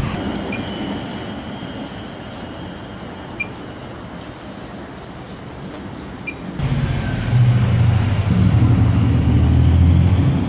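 City street traffic noise; about two-thirds of the way in, a heavy vehicle's low hum sets in abruptly and stays loud to the end.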